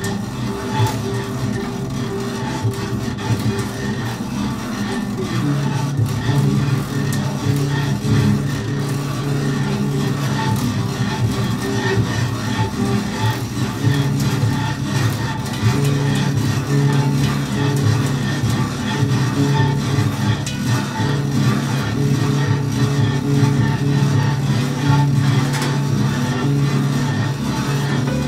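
Two prepared double basses bowed together, holding sustained low drones that shift in pitch about five seconds in.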